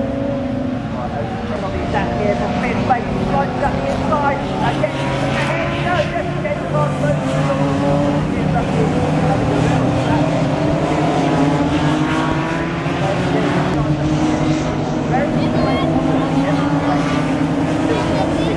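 BMW 3 Series race cars' engines running hard on track, several overlapping engine notes rising and falling as the cars accelerate, brake and pass through the corners.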